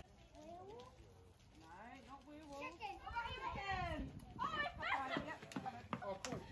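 Faint voices of a group of people talking and calling out at a distance, several overlapping.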